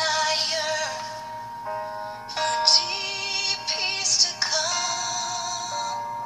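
A song playing: a singing voice with vibrato over steady, sustained chords.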